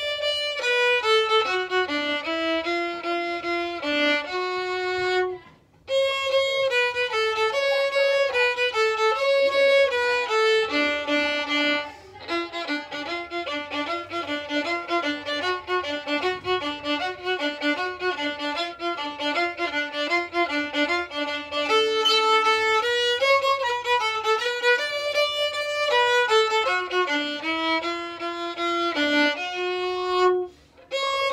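Solo violin, bowed, playing a lively tune in D at a quick tempo, note after note in fast succession. There is a brief pause about six seconds in, and a run of rapid back-and-forth notes through the middle.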